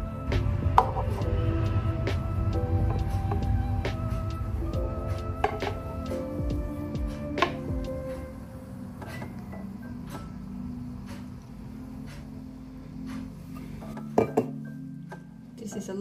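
A man making funny vocal sound effects over background music, with a few sharp clinks of the metal milk pitcher and the glass cup.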